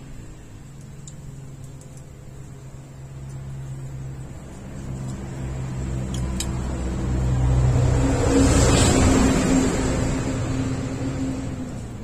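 A motor vehicle passing by: its engine grows slowly louder to a peak about eight to nine seconds in, then fades away.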